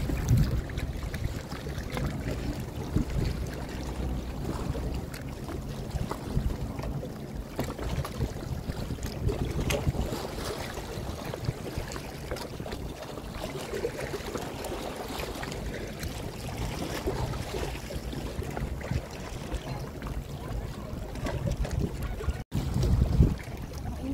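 Wind buffeting the microphone over lapping lake water: a steady, gusty rushing noise with a low rumble. The sound drops out briefly near the end.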